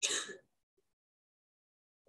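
A person clearing their throat once, briefly, right at the start.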